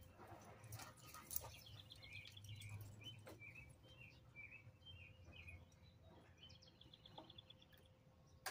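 Faint birdsong: short repeated chirps, with a fast trill near the start and another near the end, over a low background rumble. A sharp tick stands out about a second and a half in.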